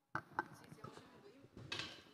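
Faint, indistinct voices in a small room, with two sharp clicks or knocks in the first half second and a short burst of noise near the end.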